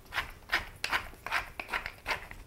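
Wooden pepper mill grinding peppercorns, a short burst of grinding with each twist, about three a second.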